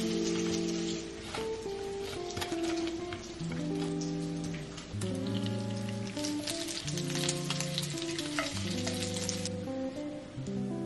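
Bacon sizzling and crackling in a frying pan, under background music.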